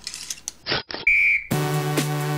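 A break in the music: two short noisy clicks, then one loud, steady, high whistle note lasting about half a second. Electronic dance music with a steady bass comes back in about a second and a half in.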